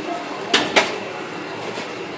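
Two sharp clicks about a quarter second apart over a steady background of room noise.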